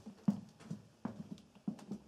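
Footsteps knocking on a hard floor in a narrow stone underground passage, a little irregular, about three steps a second.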